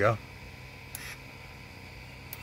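A man's voice says one word at the start, then only a faint steady background remains, with one short soft hiss about a second in.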